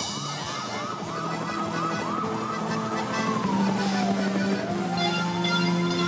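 Siren sound effect played as part of a cumbia band's song intro: a fast yelping wail, about four sweeps a second, then slows into one long falling and rising wail, over held keyboard chords.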